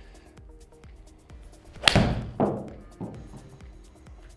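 Titleist T300 iron striking a golf ball off a simulator hitting mat: one sharp crack about two seconds in, followed by a duller thud about half a second later and a smaller knock near the end, over background music.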